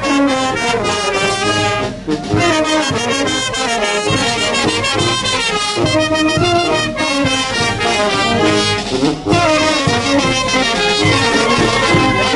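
Live brass band playing dance music: trumpets, trombones and sousaphones over a steady drum beat, with brief breaks between phrases about two seconds in and again near nine seconds.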